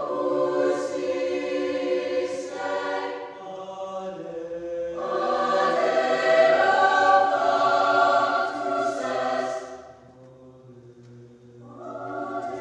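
Mixed high-school choir singing sustained chords, with hissed 's' consonants. The singing softens, swells loud in the middle, then breaks off into a short pause near the end before the voices come back in.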